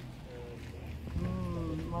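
Wind buffeting the microphone as a low rumble, and from about a second in a person's voice making a held, slightly wavering "mm" sound.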